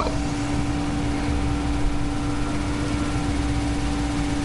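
Steady background hum and hiss with one constant low tone, like a fan running.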